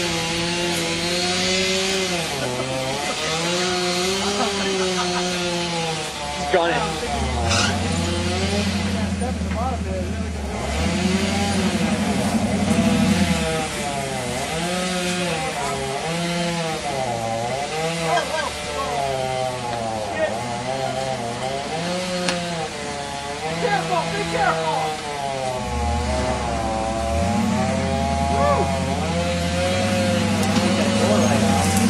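Engine of a lifted off-road vehicle rock crawling, the throttle blipped again and again so that the engine note rises and falls every second or two.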